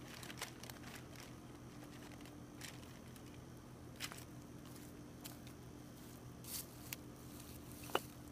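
Faint, scattered rustles and crackles of a plastic cover sheet being handled and stepped on, with a few footsteps on dry grass and leaves, over a steady low hum.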